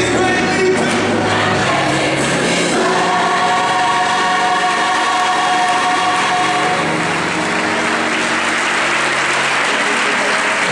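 Gospel choir with band singing and holding a long final chord. Congregation applause and cheers swell in over the last few seconds as the song ends.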